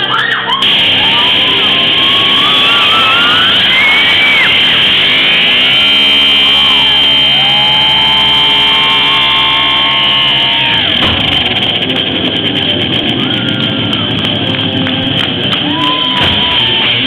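Live rock band with electric guitars playing the loud opening of a song. Sliding guitar lines lead into a long held chord, which breaks off about eleven seconds in before the band plays on.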